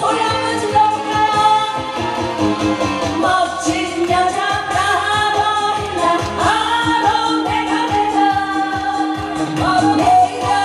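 A woman singing a Korean trot song live into a microphone, holding long wavering notes over band accompaniment with a steady beat.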